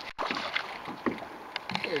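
Lake water sloshing and splashing at the surface where a hooked trout is being drawn in on the line, with a few faint light splashes.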